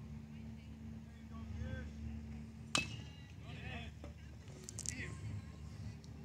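A baseball bat hitting a pitched ball once, a single sharp crack about three seconds in, followed by brief distant shouts from players and spectators.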